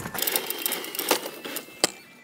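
Small electric go-kart driven by two 250-watt DC motors, running with a rapid mechanical whirring and chattering. A single sharp click comes near the end.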